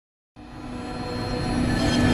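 Outro music fading in from silence about a third of a second in: a low rumbling drone with held tones that grows steadily louder.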